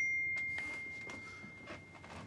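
Doorbell chime: a single high, bright ding that rings on and fades slowly, with faint light knocks beneath it.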